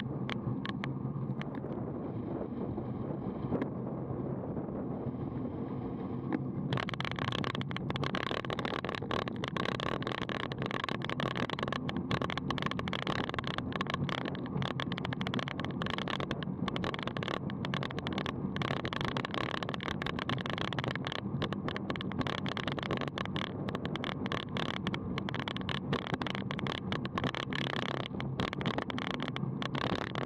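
Road-bike riding noise on a bike-mounted action camera: wind on the microphone and tyres rolling at around 30 km/h. About seven seconds in it turns brighter and rattlier, with dense irregular jolts, as over a rough paved surface.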